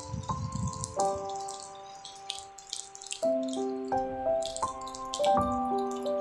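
Calm background music of held notes that move to a new chord every second or so, with a light patter of drips over it.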